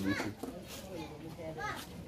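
Quiet background voices, with children's voices among them, in short murmured snatches rather than one clear speaker.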